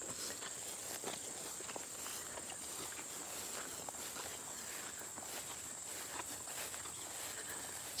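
Faint footsteps swishing through long grass, irregular and soft, over a steady high-pitched insect chorus.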